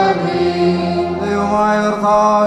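Liturgical chant of the Holy Qurbana, voices singing long, held notes.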